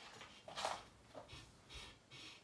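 Faint rustling and handling noises: about four short, scrapy rustles in the second half, with no music or speech.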